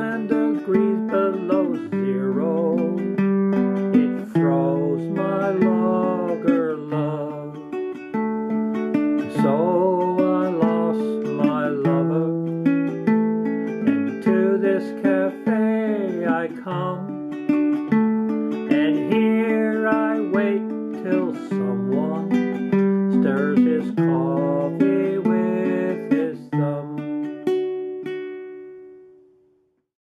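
Ukulele strummed in a steady rhythm while a man sings. It ends on a final chord that rings out and fades away near the end.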